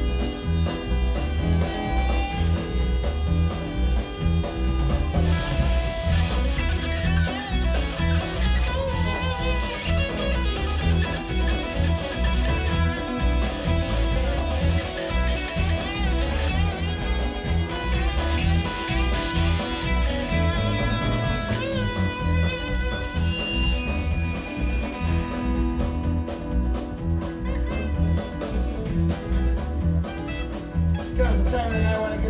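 Live rock band playing an instrumental stretch with no singing: electric guitar, bass guitar, keyboards and drums, with a steady beat.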